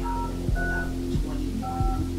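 Phone keypad touch tones: three short dual-tone beeps as numbers are dialed, about half a second to a second apart. Underneath runs background music with a steady beat.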